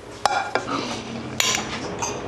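Metal pot and utensils clattering in a kitchen: a sharp ringing clank about a quarter second in, another soon after, and a louder clatter near a second and a half.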